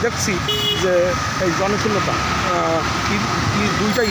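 People talking over the steady noise of street traffic, with a brief high-pitched tone about half a second in.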